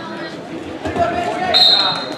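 Voices in a gym hall with a few low thumps about a second in, then a referee's whistle blows one steady high note for about half a second near the end.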